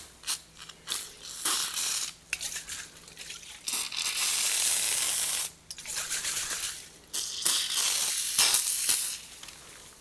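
Aerosol can spraying foaming cleaner onto a copper hammer head in a string of hissing bursts, the longest lasting nearly two seconds, with short clicks between them.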